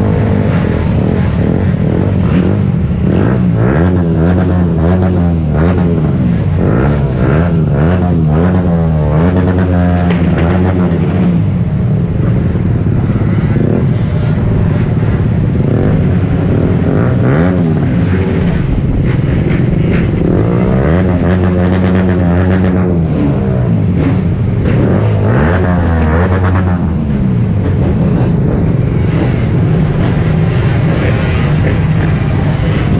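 Engines of a large group of scooters and motorcycles running at low speed, several revving up and down at once, their rises and falls in pitch overlapping.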